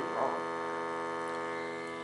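Steady electrical hum, a low buzz with several overtones that holds unchanged in pitch and level.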